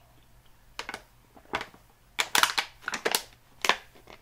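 Thin plastic water bottle crackling and clicking in the hand while being drunk from and handled: a scatter of short, sharp crinkles, a few in the first half, then a denser cluster from about halfway.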